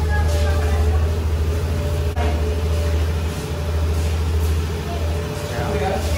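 Honda Activa 125 scooter's small single-cylinder four-stroke engine idling with a steady low hum.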